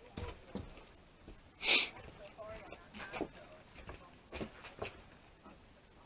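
Faint distant voices in a quiet lull, with a few light clicks and one short hiss-like burst a little under two seconds in.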